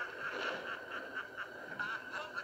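Raspy, croaking snarl of an animated rat villain, with a steady hiss of rain beneath it.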